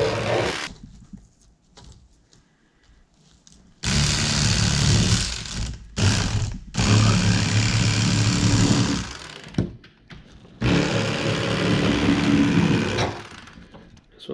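Electric fillet knife running in separate runs of two to four seconds as it cuts through yellow bass, its motor buzzing with a low hum and stopping between runs. The first run ends just under a second in, and a quiet gap of about three seconds follows.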